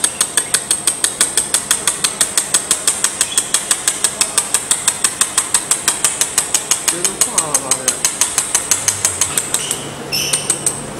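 Pulsed laser mould welding machine firing a rapid, even train of sharp snaps, about five to six pulses a second, as it spot-welds filler wire onto a steel plate, with a thin high whine. The pulses pause briefly near the end.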